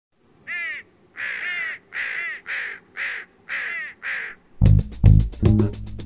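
A crow cawing, about seven harsh caws in a row. About four and a half seconds in, music with plucked bass and guitar starts, in a fast even rhythm.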